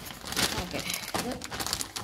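Clear plastic zip-lock bag crinkling as hands handle it and shift the chocolate chip cookies inside, a dense run of irregular crackles.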